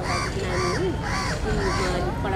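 A crow cawing four times, about one call every half second, over a faint voice.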